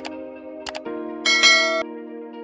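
Soft background music with two mouse-click sound effects, then a bright bell chime lasting about half a second, a little over a second in: the sound effects of an on-screen like-and-subscribe button animation.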